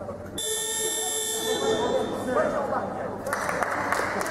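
A gym scoreboard buzzer sounds once, a steady, shrill electronic tone of about a second and a half starting about half a second in. It marks the end of a timeout, heard over a coach talking to his team.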